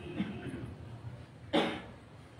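A man's single short cough close to the microphone, about one and a half seconds in, against quiet room tone.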